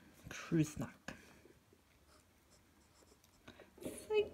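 Glass dip pen writing on lined notebook paper: the faint, light scratching of the glass nib as letters are formed.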